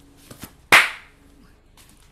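A single sharp smack about three-quarters of a second in, with a couple of faint clicks just before it.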